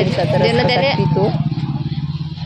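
A small engine running steadily, with a fast, even low pulse. A voice sounds over it during the first second or so.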